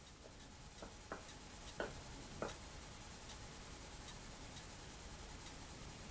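Faint scraping of a plastic spatula pushing food out of a frying pan into a bowl: four short strokes in the first two and a half seconds, then only low room tone.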